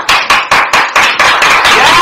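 Hand clapping by a couple of people: quick, even claps at about five a second, merging into denser, steadier clapping after about a second.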